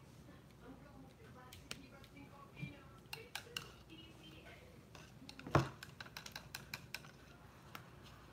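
Paintbrushes clicking and clattering as they are pulled from and dropped into a plastic cup of brushes and tapped on the table: a string of sharp taps, the loudest knock about five and a half seconds in.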